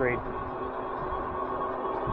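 Steady riding noise of a 1000-watt fat-tire folding e-bike climbing a hill on throttle at about 16 mph: the motor and tyres hum steadily under load, with a low fluctuating rumble.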